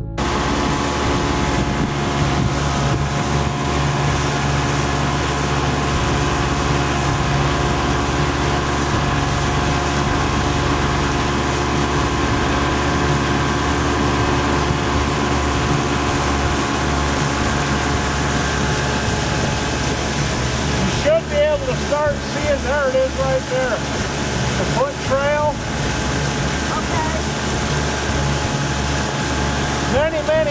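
Motorboat engine running steadily while the boat cruises on calm water, with wind and water noise. A person's voice comes in briefly about two-thirds of the way through and again near the end.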